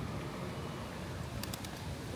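Outdoor plaza ambience with feral pigeons in the square: a steady low rumble in the background. A quick cluster of three or four sharp clicks comes about one and a half seconds in.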